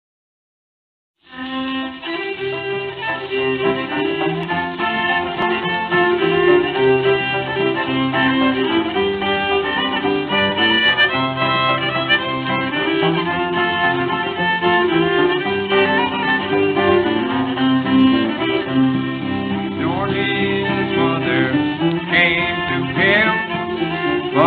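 Old-time string band playing a fiddle-led instrumental introduction, with banjo and guitar, on an early narrow-band 78 rpm recording. It starts about a second in, and a man's voice begins singing near the end.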